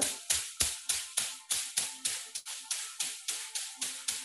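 A long handheld massage stick tapping quickly against the body, steady at about three to four sharp taps a second: qigong tapping self-massage down the side of the rib cage.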